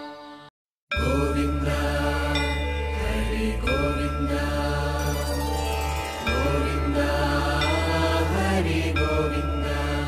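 Devotional music with chanting over a steady low drone, starting after a brief silence just under a second in and cut off at the end.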